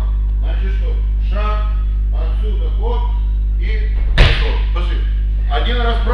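Indistinct voices over a steady low hum, and about four seconds in a single loud, sharp smack of an impact on the wrestling mat.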